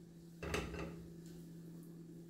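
Pieces of sliced sausage set by hand into a dry metal frying pan, with one faint knock about half a second in.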